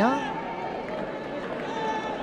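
Football stadium crowd noise, a steady murmur with faint distant voices, after a commentator's word ends at the start.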